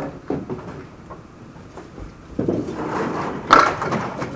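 A candlepin ball drops onto the wooden lane with a low thud about two seconds in and rolls with a building rumble, ending in a sharp clack near the end as it reaches the pins.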